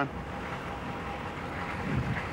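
A vehicle engine running steadily, a low rumble with a faint steady whine above it.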